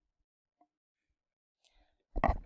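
Near silence, with two very faint short sounds, about half a second in and near the end.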